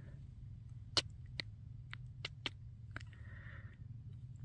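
Quiet: about six faint, sharp clicks and ticks scattered over a low steady hum, the loudest about a second in.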